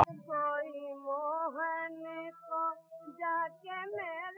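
A woman singing solo in a high voice in Hindustani light-classical style: long held notes with small turns and slides, in short phrases with brief gaps. A faint low drone sits beneath.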